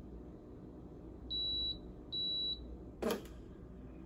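Breville Barista Express espresso machine giving two short high beeps, which signal that its automatic cleaning cycle has finished. A short, sharp knock follows about a second later.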